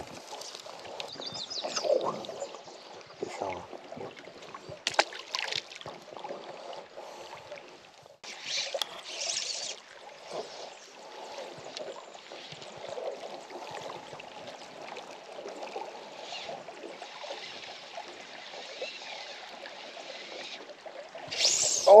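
River water lapping and running against the hull of a drifting boat, a steady low wash with a light knock about five seconds in and a short hiss around eight seconds in.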